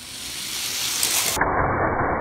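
A die-cast Hot Wheels car whirling around the inside of a plastic funnel on a toy track set: a steady rushing rattle that grows a little louder, with a few clicks in the second half.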